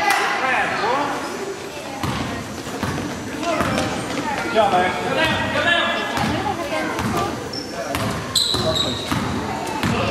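Spectators' voices and shouts in a gymnasium, with a basketball bouncing on the hardwood court and scattered knocks of play. A brief high squeak comes about eight seconds in.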